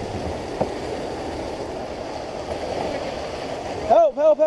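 Rushing, churning water swirling around a plastic kayak's hull, a steady wash of noise with no break.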